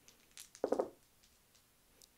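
Five six-sided dice thrown onto a cloth wargaming mat: one short, soft clatter a little over half a second in.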